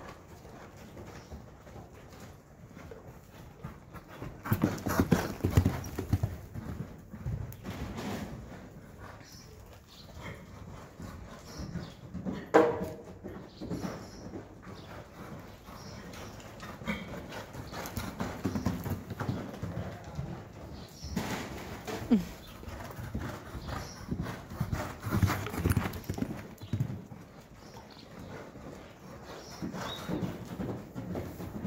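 Hoofbeats of a ridden horse on an indoor arena's dirt footing, growing louder in passes as the horse goes by, with a brief sharp sound about twelve seconds in.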